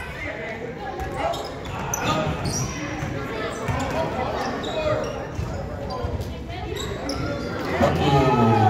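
A basketball bouncing on a hardwood gym floor in repeated short strikes as play moves upcourt, with players and spectators calling out throughout in a large gym.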